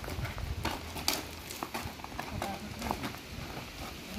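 A cow's hooves stepping on loose gravel as it walks: irregular crunching steps.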